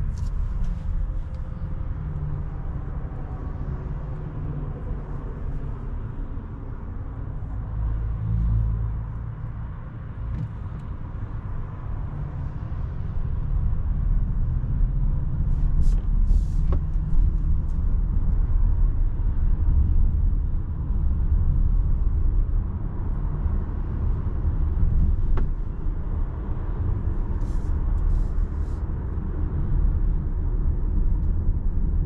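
Cabin of a 2023 Volkswagen ID. Buzz Cargo electric van driving slowly on a city road: a steady low road and tyre rumble, growing louder about halfway through as the van speeds up, with a few faint clicks.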